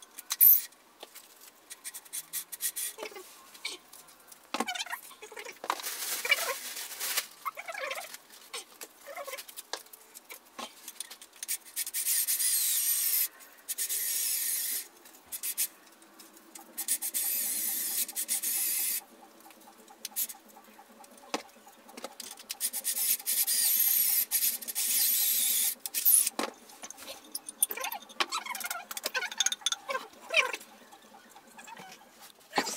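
Cordless drill running in about four bursts of one to three seconds, driving the fittings of the desk legs, with clicks and knocks of parts and tools being handled in between. The audio is sped up, which pitches everything higher.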